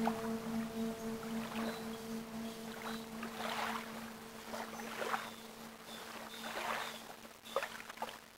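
Soundtrack of a steady low drone with one overtone, fading out near the end, with irregular swishing noises over it about every second or two.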